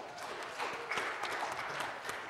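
A congregation applauding: a short round of clapping that swells through the middle and thins out toward the end.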